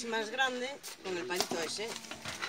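People talking, untranscribed voices, with a light knock about a second and a half in.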